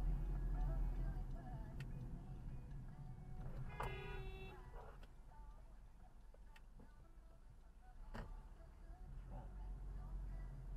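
A car horn honks once, for just under a second, in the middle, over the low rumble of the car's engine and road noise.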